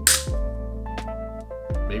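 Background electronic music: sustained synth tones over deep bass notes that slide down in pitch twice. A short sharp hiss-like hit opens it.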